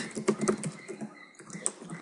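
Computer keyboard keys clicking in a quick run of keystrokes as a word is typed.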